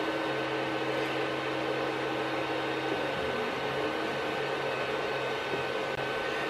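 Creality CR-10 Mini 3D printer running mid-print: a steady whir of its cooling fans and a constant high tone as the stepper motors move the print head. A low hum drops away about halfway through.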